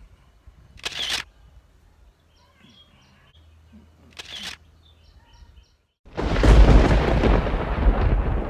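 A sudden deep boom breaks in about six seconds in, after a moment of dead silence, and rumbles on as it slowly fades: an edited-in cinematic impact sound effect. Before it the sound is faint, with birds chirping in the background and two short puffs of breath.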